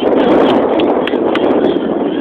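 Wind buffeting the microphone: a loud, even rush with a few light knocks.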